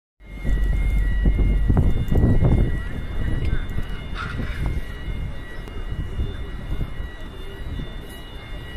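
Outdoor crowd ambience picked up on a phone microphone. A heavy low rumble fills the first three seconds, then eases, and faint steady high-pitched tones run underneath throughout.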